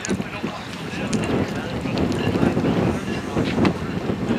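Wind buffeting the camera microphone, a steady low rumble, with faint voices talking in the background.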